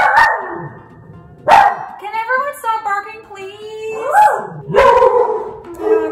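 Small dog barking a few times in sharp, loud bursts.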